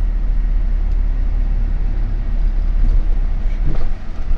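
Steady low rumble of engine and road noise heard inside the cabin of a moving minibus.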